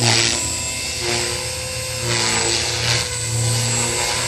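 JR Forza 450 radio-controlled helicopter flying: a continuous whine from the motor and rotor head whose pitch shifts every second or so, with rotor-blade whooshes swelling at the start and again around two to three seconds in.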